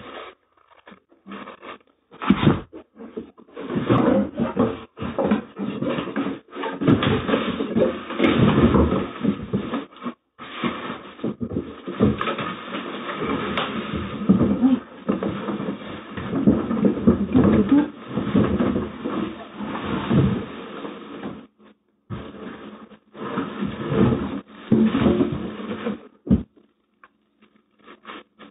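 Unpacking noise from a boxed electric folding scooter: cardboard and plastic wrapping rustling and scraping in irregular stretches, with a sharp thump about two seconds in and another near the end.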